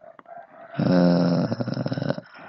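A loud, throaty growling vocal sound lasting about two seconds, strongest from under a second in until just after the end.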